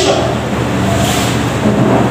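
Steady hiss and room noise of a hall picked up through the preacher's microphone during a pause in speech, with a low hum underneath.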